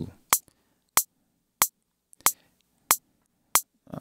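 A software metronome clicking in steady time, six sharp ticks about two-thirds of a second apart (about three every two seconds) while the beat is playing back.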